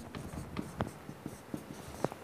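Faint, irregular scratches and ticks of someone writing by hand.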